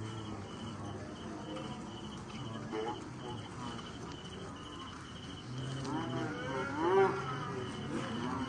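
Crickets chirping in a steady, even pulse, about three chirps a second. Near the end comes a louder, drawn-out call that rises and falls in pitch.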